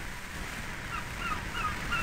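Four or five short, faint bird-like chirps in quick succession in the second half, over the steady hiss of an old film soundtrack.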